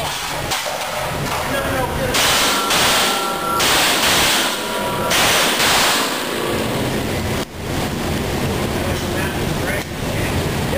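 A string of pistol shots fired in quick succession in an indoor range, each one ringing out with heavy echo off the concrete walls.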